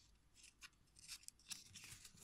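Faint dry rustling and light scraping of a small handmade paper-and-cloth book being handled as its cover is opened. A scatter of short crisp sounds grows busier about halfway in.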